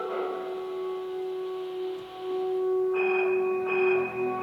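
Youth symphony orchestra playing a soft sustained passage, one low note held throughout, with a higher sustained tone entering about three seconds in.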